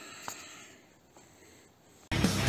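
Near silence: faint room tone with one light tick about a third of a second in.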